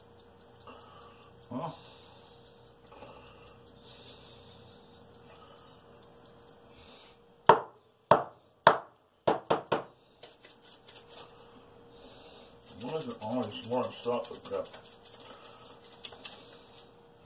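Food preparation at a kitchen counter: faint handling sounds, then about halfway through a quick cluster of about six sharp knocks.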